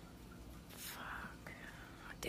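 A faint whisper: a short, breathy, hissing sound about a second in, over low room tone.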